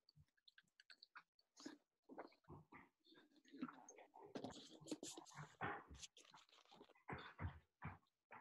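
Faint, irregular small clicks and rustling handling noises, sparse at first and busier from about three seconds in.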